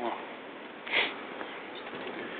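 A single short, sharp sniff about a second in, over a steady background hiss of outdoor street noise.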